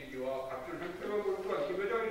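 Speech only: one person speaking continuously into a microphone, with only short breaks between phrases.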